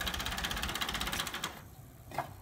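An engine running with a fast, even clatter, cutting off abruptly about one and a half seconds in.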